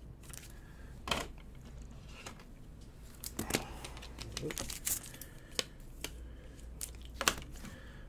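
Plastic card cases and supplies being handled and rummaged through: scattered light clicks, knocks and rustling, over a steady low hum.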